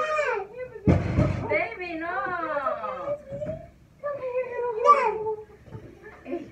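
A woman's high-pitched voice exclaiming and wailing with sweeping rise-and-fall pitch, too emotional for clear words. A short burst of noise comes about a second in.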